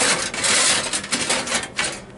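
Metal oven tray rattling and scraping in its runners as it is tugged. It is stuck and won't slide out. The clatter eases near the end.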